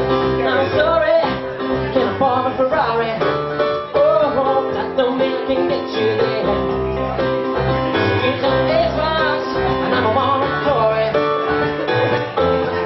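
A song performed live by a male singer with keyboard accompaniment.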